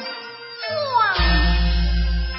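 Teochew opera music: a high melody line that slides downward in long glides. About halfway through, a strong low rumble comes in under it.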